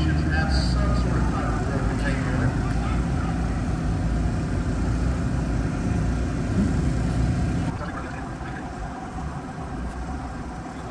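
A steady low rumble with faint voices in the background; the rumble drops away abruptly about eight seconds in.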